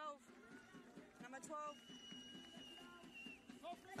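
Quiet stadium ambience of faint distant voices, with a single steady high whistle held for about a second and a half midway.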